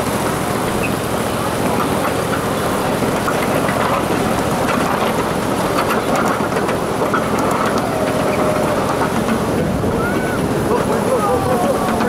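Steady rolling rumble of a ride-on miniature train running along its track, with faint voices toward the end.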